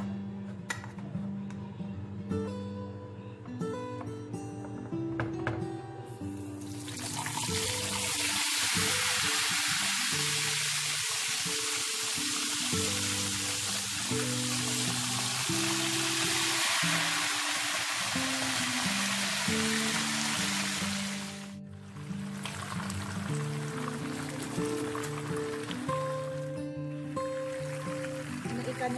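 Whole fish frying in hot oil in a pan: a loud sizzle starts about six seconds in and holds for about fifteen seconds, then drops back to a quieter sizzle. Background music plays throughout.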